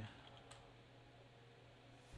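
Near silence with a single faint computer-keyboard keystroke about half a second in, as a "git status" command is finished and entered.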